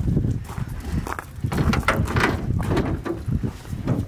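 Footsteps crunching on gravel as several people walk up to the car, with the hood being unlatched and lifted, amid irregular knocks and low rumble.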